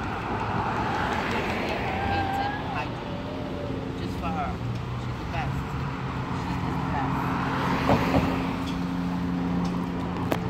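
City street traffic: cars passing on the road, with a steady low engine hum setting in about two seconds in, and faint voices in the background.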